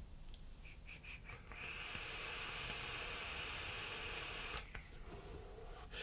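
A long draw on a vape: a faint, steady hiss of air pulled through the tank and the firing coil, lasting about three seconds and ending with a click.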